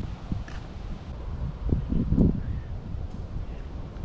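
Wind rumbling on the camera microphone outdoors, briefly louder about two seconds in.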